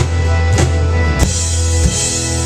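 Live indie rock band playing an instrumental passage with no vocals: acoustic and electric guitars, keyboard and drums, with a drum hit about every 0.6 seconds over a steady low bass. Recorded on a cheap camera from the audience, so the sound is a bit rough.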